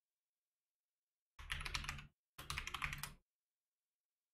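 Typing on a computer keyboard: two short runs of rapid keystrokes, the first about a second and a half in, the second right after it.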